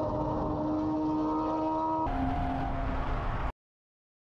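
Car engine and road noise inside the cabin at highway speed: a steady engine note whose pitch steps down about two seconds in. The sound cuts off suddenly shortly before the end.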